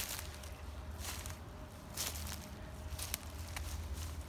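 Footsteps through grass and leaf litter on a wooded slope, several separate steps, over a steady low rumble.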